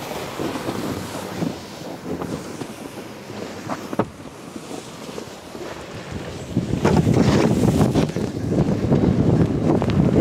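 Wind noise on the microphone, much louder in the second half, as a rider slides away down a snow chute on an inflatable snow tube. A single sharp click about four seconds in.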